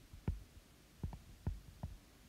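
Stylus tapping on a tablet's glass screen while handwriting a word: about five faint, short knocks, spaced irregularly.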